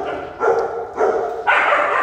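A dog vocalising several times in quick succession, short pitched calls followed by a louder one about one and a half seconds in.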